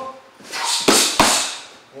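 Two sharp smacks of boxing gloves hitting focus mitts, about a third of a second apart, a jab followed by a harder follow-up punch, just under a second in.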